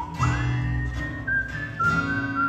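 Small acoustic country band playing an instrumental break: a high, clear melody line slides up and then holds long notes over guitar and plucked upright bass.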